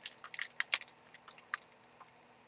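A phone being picked up and handled: a quick run of light clicks and clinks in the first second, then a few scattered taps.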